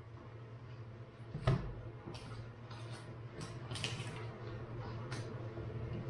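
Comic books and plastic bags rustling in short crisp bursts as they are handled, with a single knock about one and a half seconds in. A steady low hum from a fan heater runs underneath.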